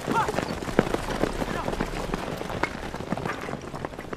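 A group of people running on a dirt path through brush: a rapid jumble of footsteps with rustling, and a man's brief shout of "快" ("hurry") at the very start.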